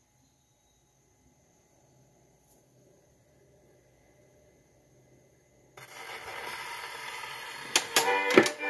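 Steel needle of a Victrola acoustic phonograph set down on a spinning 78 rpm shellac record. Near silence at first, then about six seconds in a loud hiss of record surface noise starts suddenly, with two sharp clicks near the end just before the music.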